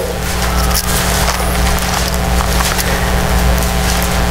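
Steady hiss with a low electrical hum and faint crackle from the church's sound or recording system.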